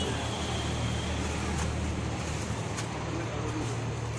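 Outdoor background noise: a steady low rumble with faint, indistinct voices.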